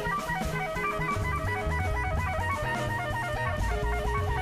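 Live jazz: a soprano saxophone plays a fast, continuous run of notes over double bass and drums.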